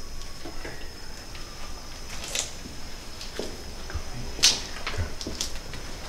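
Steady high chirring of crickets, with scattered sharp clicks and knocks; the sharpest comes about four and a half seconds in.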